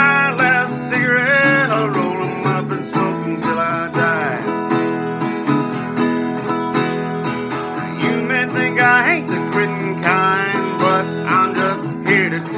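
Vintage acoustic guitar strummed in a steady country rhythm. A man's voice holds a sung note at the start and sings a few more drawn-out phrases later on.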